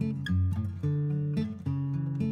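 Background music: an acoustic guitar strumming chords, changing every half second or so.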